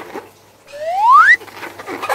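A single rising whistle-like squeak, gliding smoothly up in pitch for just over half a second and cutting off sharply.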